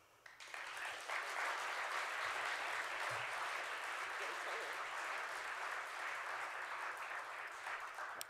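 Audience applause that builds up over the first second, holds steady and dies away near the end.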